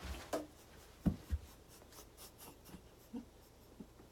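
Rustling and knocking as a person gets up off a piano bench and moves about. Two soft low thumps about a second in are the loudest sounds, followed by a run of small clicks and rubbing as she comes close to the recording device.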